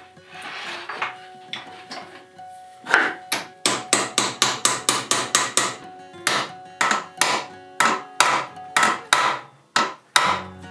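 Hammer striking in quick, sharp taps: a fast run of about a dozen blows from about three seconds in, then after a short pause a slower run of about ten.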